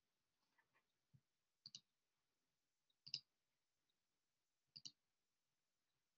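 Near silence broken by faint double clicks, three pairs about a second and a half apart, with a softer single click just before the first pair.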